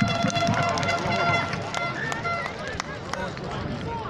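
Sideline spectators at a rugby match talking and calling out over one another, with a few sharp clicks. A steady pitched tone runs under the voices and stops about two and a half seconds in.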